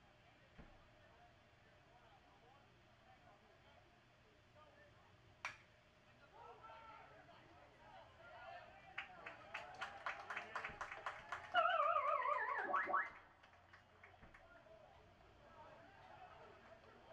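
Crack of a baseball bat hitting the ball about five seconds in, followed by a rising crowd murmur and a run of rhythmic claps. Near the end comes a loud wavering tone that falls in pitch for about a second and a half, then cuts off.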